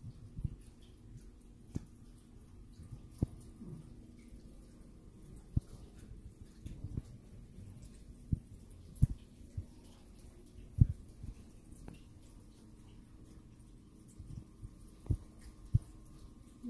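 Irregular, short, low thumps and knocks, a dozen or so spaced unevenly, over a faint steady hum of a small quiet room.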